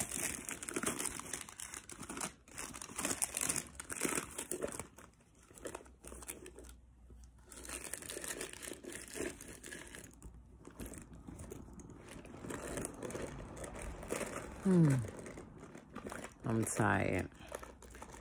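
Paper and plastic shopping bags crinkling and rustling in irregular bursts as they are rummaged through by hand, with a short murmured voice sound near the end.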